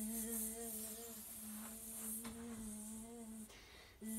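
A child humming one steady low note through closed lips, a buzz imitating a wasp; it breaks off about three and a half seconds in.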